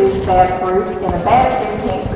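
A person's voice, with long held notes.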